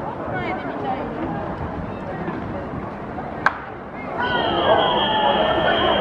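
Spectators chattering in the stands at a baseball game, with one sharp crack of the pitched ball about three and a half seconds in. From about four seconds in the voices grow louder, and a steady high tone runs beneath them.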